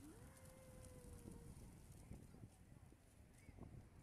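Faint, irregular flapping of many pigeons' wings as a large flock flies up, over a low rumble. A single drawn-out call rises and then holds during the first second and a half.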